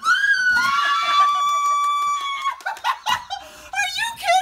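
A woman's long, high-pitched scream of excitement at happy news, held for about two and a half seconds, followed by short bursts of laughter.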